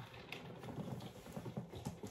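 Soft, irregular rustling and light knocks as paper calendar pages are handled and turned over.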